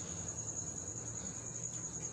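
Faint background of a steady high-pitched trill, unbroken throughout, over a soft low hum.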